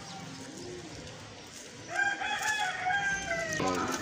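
Pigeons cooing softly in the loft, then about halfway in a rooster crows once, a single long call of nearly two seconds that is the loudest sound here.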